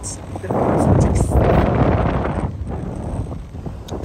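Wind buffeting the microphone for about two seconds aboard a motor yacht under way, over a steady low engine hum.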